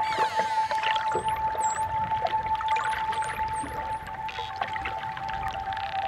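Dolphin whistles and clicks over calm ambient music holding one long steady note. The whistles are high and sweep up and down, several of them in the first half.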